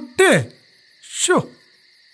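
Three short calls, each dropping steeply in pitch, over a steady high chirring of night insects.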